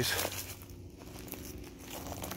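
Faint, irregular crackling and crunching of footsteps on dry leaf litter and loose dirt, with a soft low hum underneath.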